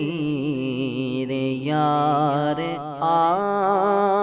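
A male voice singing a naat, a long, wavering melismatic line over a steady low drone, with a new phrase starting about halfway through.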